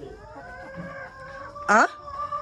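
Hens calling inside a henhouse, with one short, loud squawk rising sharply in pitch near the end.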